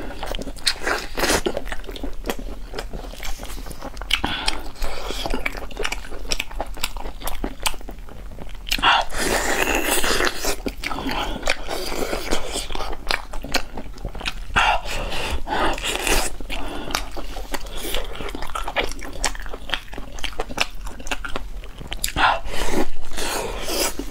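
Close-miked eating of braised bone-in meat that is full of tendon: biting and chewing with many short wet clicks, in longer noisier stretches about ten and sixteen seconds in and loudest near the end.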